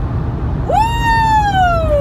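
A woman's long, high excited squeal, starting under a second in, jumping up and then sliding slowly down in pitch, over the steady low rumble of car road noise.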